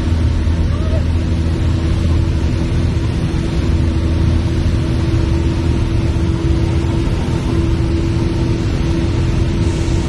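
Cabin noise of a Piper PA-28-160 Cherokee in cruise flight: the steady drone of its four-cylinder Lycoming O-320 engine and propeller, a low hum with a constant higher tone over it.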